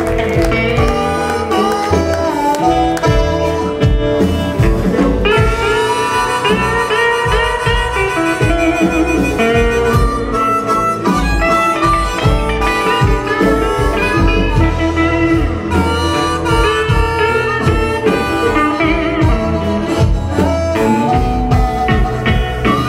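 Live electric blues band playing an instrumental blues, with electric guitars, violin, harmonica, bass and drums; bent notes run through it.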